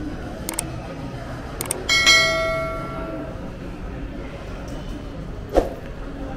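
A single bell-like metallic ring about two seconds in, fading away over about a second and a half, over the steady background noise of a shopping mall. A few light clicks come before it, and a sharp knock near the end.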